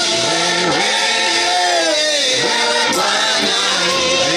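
Gospel choir singing continuously, led by a male voice singing into a microphone.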